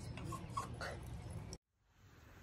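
Cavapoo puppy whimpering, a few short high whines in the first second, before the sound cuts off suddenly near the end.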